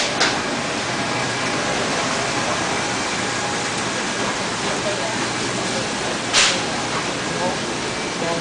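Steady, even background noise of a busy supermarket, with faint voices in the distance and a short sharp hiss about six seconds in.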